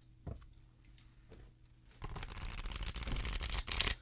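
A new tarot deck being riffle-shuffled by hand. The first two seconds are quiet handling, then halfway through comes a fast rattle of flicking cards, ending in a brief louder burst as the halves are bridged together.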